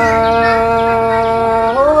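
A man's voice singing one long held vowel in a Tây Bắc Thai folk love song (hát giao duyên), steady in pitch and stepping up to a higher note near the end.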